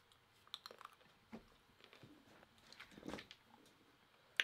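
Near silence with a few faint clicks and rustles of handling, the loudest cluster about three seconds in, as a plastic spray bottle is picked up.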